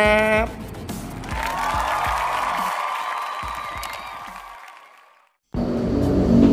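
Background music fading out to a brief silence about five seconds in.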